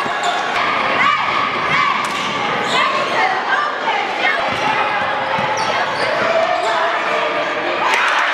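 Live gym sound of a basketball game: the ball bouncing on the hardwood court and sneakers squeaking, with people's voices echoing in a large hall. Short high squeaks come in the first few seconds.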